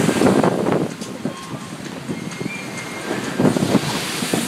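Gusty tropical-storm wind buffeting the microphone, strongest in the first second and then easing to a steadier rush.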